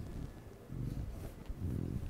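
A man's quiet, low chuckle and breathing between sentences.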